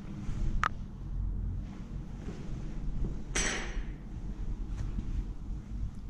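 Footsteps moving across a debris-strewn floor over a steady low rumble of camera handling. There is a sharp clink about half a second in and a louder, brief scrape about three and a half seconds in.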